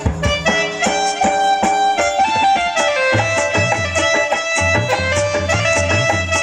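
Live instrumental music: an electronic keyboard playing a melody in steady stepped notes over tabla accompaniment, with a low pulsing beat coming in about halfway through.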